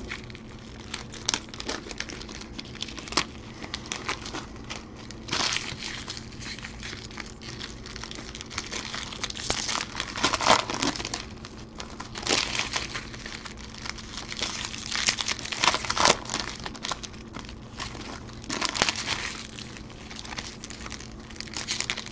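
Foil Topps Chrome card-pack wrappers crinkling and crumpling in the hands, in irregular crackles, as packs are opened.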